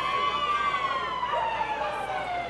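A siren wailing: one sustained tone that rises slightly and then slides slowly down in pitch.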